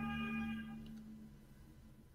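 A soft pitched ringing tone, like a chime, sounding at the start and fading out within about a second.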